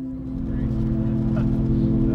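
Light bush plane's piston engine and propeller running, heard from inside the cabin as a low, pulsing rumble that comes in at the start, under a held musical tone.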